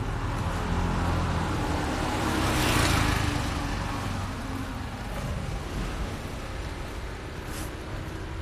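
A road vehicle passing close by, its noise swelling to a peak about three seconds in and then fading, over a steady low traffic rumble.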